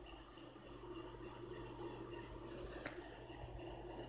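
Faint steady background hum, with one light click a little under three seconds in.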